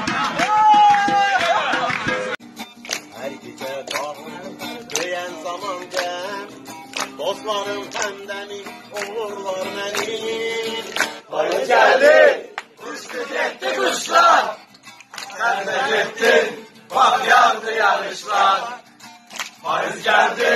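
A group of men singing and shouting together over sharp percussive knocks, which cuts off about two seconds in. A single man then sings while playing an acoustic guitar, quietly at first, then louder in separate phrases with short pauses from about halfway through.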